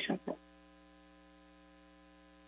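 The last syllable of a spoken word ends in the first half second, then near silence with only a faint steady electrical hum made of several steady tones in the meeting's audio feed.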